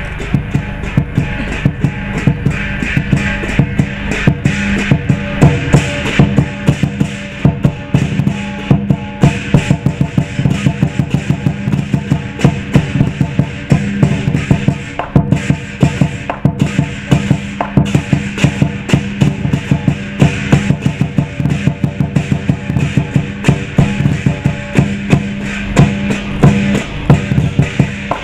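Lion dance percussion: a large Chinese drum beaten in fast, continuous strokes, with cymbals clashing along to the beat.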